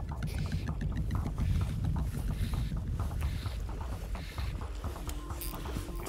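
Fly reel clicking in a rapid run as a hooked Atlantic salmon is wound in, over a steady low rumble of wind and river water around the boat.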